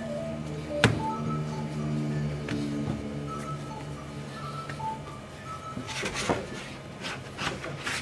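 Soft background music with held notes and a simple melody, over yeast dough being kneaded by hand on a wooden worktop: a sharp knock about a second in and rubbing noises of the dough on the board near the end.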